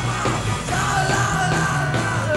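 1960s beat-group rock song: several voices singing loudly over electric guitars, bass and a steady drum beat, with a long held sung note through the second half.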